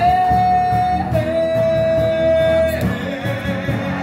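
Male singer holding a long sustained note in a live soul-pop ballad, stepping down slightly in pitch about a second in and letting it go near the three-second mark, over a live band with electric bass guitar.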